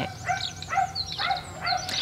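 A dog whining in a run of short, high cries, about four a second, with faint bird chirps above.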